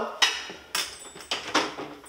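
A few short clattering knocks of kitchen things being handled, four in about two seconds, each dying away quickly.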